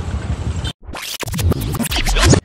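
Street traffic and engine rumble that cuts off abruptly under a second in, followed by an edited transition sound effect: a quick run of record-scratch style swipes.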